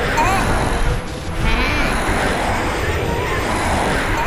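Cartoon character voices making short squeaky, bleat-like vocal sounds that rise and fall in pitch, over a steady rushing noise.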